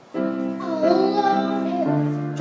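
Baby grand piano playing sustained chords, struck just after a brief pause, with a new chord and low bass note near the end. A child's voice sings one long note over them that bends up and then down.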